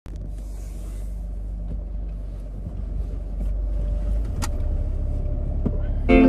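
Steady low rumble of a running car heard from inside the cabin, with a few faint clicks.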